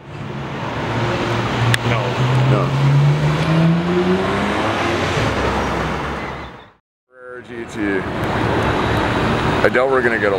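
A car engine pulling hard, its note rising steadily in pitch for a few seconds before it fades out. After a short gap, street traffic noise with an engine running.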